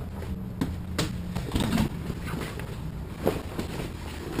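Handling noise as a canvas helm cover is grabbed and pulled: a few sharp knocks and fabric rustling over a steady low hum.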